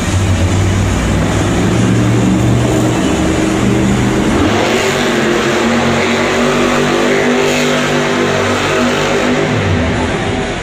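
Monster truck engine revving hard as the truck spins donuts on a dirt floor. Its pitch climbs about halfway through and stays high.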